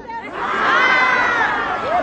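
A large crowd cheering and shouting. Many voices swell together about half a second in and die away near the end.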